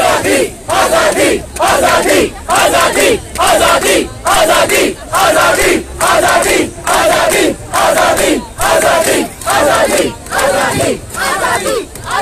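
Crowd of protesters chanting a short slogan in unison, loud shouts repeating evenly about every two-thirds of a second with brief gaps between.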